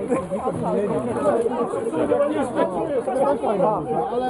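Several people talking at once: overlapping chatter of a group of voices.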